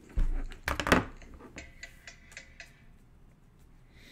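Trading cards and foil card packs handled on a tabletop: a dull knock just after the start, a few sharp clacks just under a second in, then lighter ticks that die away.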